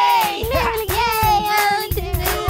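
Several children's voices singing a cheerful song together over backing music with a beat.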